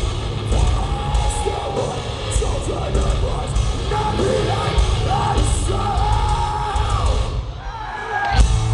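Heavy metal band playing live, heard on a camera among the crowd: loud guitars and drums with a voice yelling and singing over them. The music thins out briefly just before the end.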